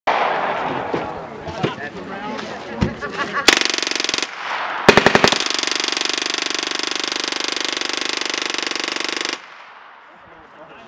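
American-180 .22 LR submachine gun firing full-auto from its top-mounted pan magazine, at a very fast rate. There is a short burst of under a second about three and a half seconds in, then a long continuous burst of about four and a half seconds that stops abruptly.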